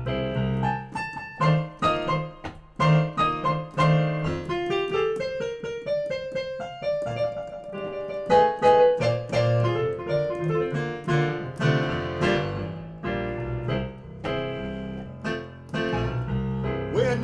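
Solo blues/stride piano break played on a digital piano: steady bass notes under chords and melody runs, with a rising run of notes around the middle.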